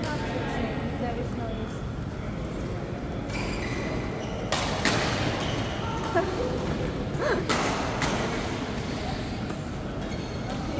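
Badminton rally: rackets striking a shuttlecock, several sharp cracks roughly a second apart between about four and eight seconds in, echoing in a large sports hall, over background chatter.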